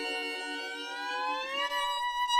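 Music: one long held instrumental note that glides upward in pitch about one and a half seconds in, then holds.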